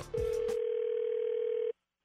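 One steady telephone tone over a phone line, the ring heard by the caller as a call rings through. It holds for about a second and a half and then cuts off suddenly.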